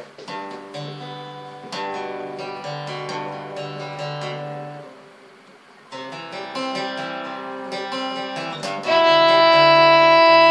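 Acoustic guitar playing a run of notes that fades out about five seconds in and starts again a second later. About nine seconds in, a fiddle comes in loud with long bowed notes over the guitar.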